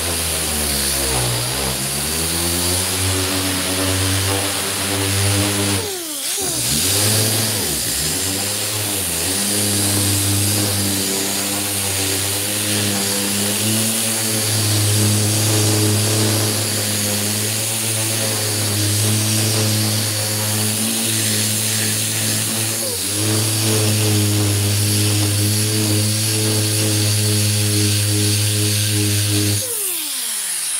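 Six-inch air-powered DA (dual-action) sander with 36-grit paper running on body filler, knocking down the glaze and overfill: a steady motor hum with a high hiss. Its pitch sags and picks back up around six seconds in and again around 23 seconds, and it shuts off at the very end.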